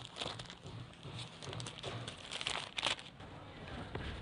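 Faint crinkling and rustling of plastic packaging being handled, with a few light ticks about two and a half to three seconds in.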